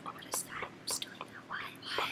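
Hushed whispering voices: a run of short, quiet whispered syllables.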